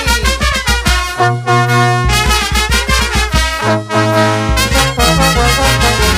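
Peruvian brass band playing a lively dance tune: trumpets and trombones hold chords over tuba bass notes and a steady drum beat.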